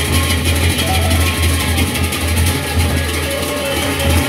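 Lombok Sasak gendang beleq gamelan playing: the large barrel drums keep a steady low booming pulse under a continuous clashing of many pairs of hand cymbals, with a short melodic line heard now and then above.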